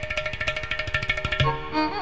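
Carnatic music: rapid percussion strokes on tabla and ghatam run over held notes, then about a second and a half in the drumming drops back and the ten-string double violin enters with bowed, sliding melodic phrases.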